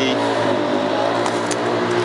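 A nearby motor vehicle engine running steadily, its hum drifting slightly in pitch.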